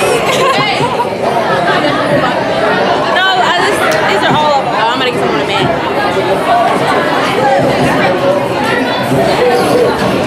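Several young women's voices chattering and talking over one another close to the microphone, with crowd murmur in a large hall.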